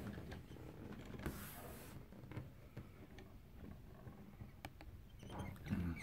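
Faint scattered clicks and a brief rustle as hands handle a small wooden driftwood automaton.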